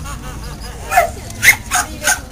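A dog barking three times in quick succession, starting about a second in, with the barks about a quarter to half a second apart.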